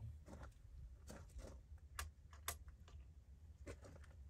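Near silence: a low rumble with a few faint, scattered clicks and taps.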